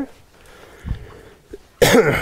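A single loud cough near the end, after a soft low thump about a second in.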